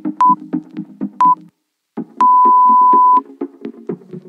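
Workout interval timer counting down: two short beeps a second apart, then one long beep about a second long that marks the end of the exercise interval and the start of the rest. Underneath is electronic background music with a steady beat, which cuts out for a moment just before the long beep.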